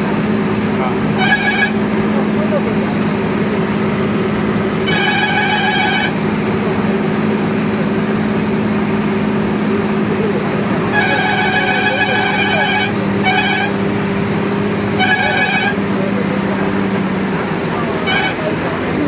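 A moving vehicle's steady engine hum, with a vehicle horn sounded five times: short honks about a second in and around five seconds, a long blast of about two seconds around eleven seconds, then two more short honks.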